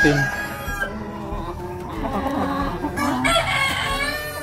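Black Australorp and White Leghorn chickens clucking, with a rooster crowing.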